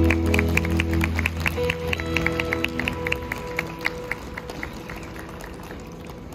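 A live acoustic band's last guitar chord ringing out and dying away, while the audience claps sparsely; the clapping thins out as the chord fades.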